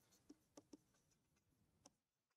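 Near silence with a few faint ticks of a stylus on a writing tablet as a word is handwritten.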